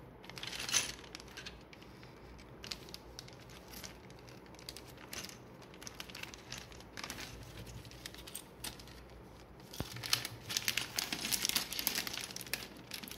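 Clear plastic parts bags of building-toy pieces crinkling as they are handled: scattered rustles, with a denser, louder stretch of crinkling in the last two seconds.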